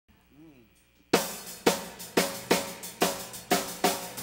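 Drum kit playing a song's intro: after a faint first second, steady hits about two a second on snare and cymbals, each ringing out, with a quick double hit near the end.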